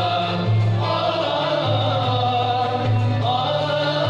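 An Andalusian (gharnati) orchestra plays and sings: several voices sing a melody together over ouds, mandoles, violins and cello. Sustained bass notes move under it, changing roughly every second.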